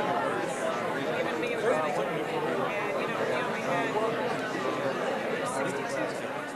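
Many people talking at once in small groups in a large room: a steady babble of overlapping conversation, with no one voice standing out.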